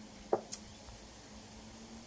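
Quiet handling of a small plastic food-colouring bottle: two brief sounds close together, the second a sharp click, about a third to half a second in, over a faint steady hum.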